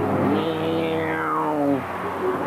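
A motor vehicle driving past, its engine drone lasting about a second and a half and falling gently in pitch as it goes by.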